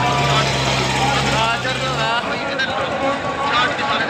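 Crowd voices over a steady low engine drone that cuts off abruptly about two seconds in.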